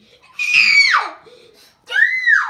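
A person's high-pitched scream, shrill at first and falling steeply in pitch over about half a second, with a second rising-then-falling cry beginning near the end.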